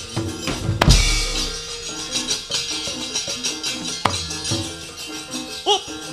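Javanese gamelan accompaniment for a wayang kulit puppet scene: repeating metal-keyed tones with drumming, punctuated by sharp clacks about a second in and again about four seconds in, the dalang's knocks and metal keprak plates that cue the puppets' moves. A short rising-and-falling vocal cry comes near the end.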